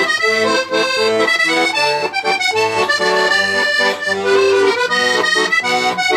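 Hohner button accordion playing a solo tune: quick runs of melody notes over a steady bass accompaniment, the reeds sounding continuously with no pause.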